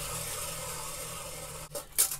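Rotary carving tool with a burr bit grinding into wood, a steady rasping that stops abruptly near the end, followed by a single click.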